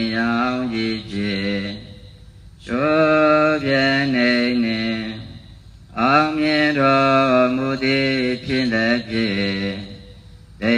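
One voice chanting a Buddhist recitation in long, drawn-out phrases, with two short breaks: about two seconds in and again after about five seconds.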